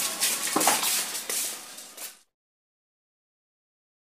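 Wrought-iron gate rattling and clanking as it is pushed open, with scuffing footsteps. The sound cuts off abruptly to dead silence a little over two seconds in.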